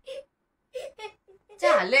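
A young boy crying: a few short sobs, then about one and a half seconds in a loud wail that falls in pitch as he cries out "No".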